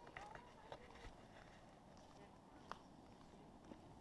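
Quiet footsteps on a dirt hiking trail, a few soft irregular scuffs and clicks, with a faint voice briefly near the start.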